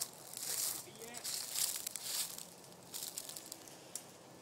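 Irregular bursts of rustling, crinkling noise, loudest in the first half, with a few faint voice-like sounds in between.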